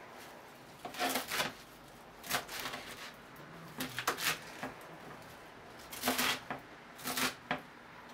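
Kitchen knife chopping Swiss chard on a wooden cutting board: crisp cuts through leaves and stems with knocks of the blade on the board, in short bursts every second or two.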